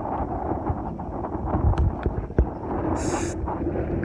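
Wind buffeting the phone's microphone, a gusty low rumble throughout, with a short high hiss about three seconds in.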